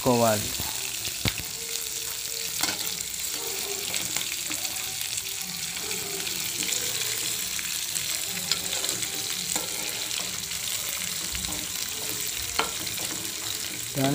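Onions, green chillies, peanuts and curry leaves sizzling steadily in hot oil in a metal pan, the tempering for upma. A steel spoon stirs them, clicking against the pan now and then.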